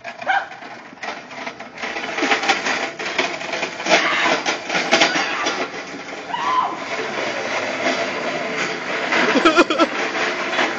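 Metal U-boat stocking cart rolling down sloping asphalt, its small casters and steel frame rattling. The rattle builds about a second and a half in as the cart picks up speed, then carries on steadily.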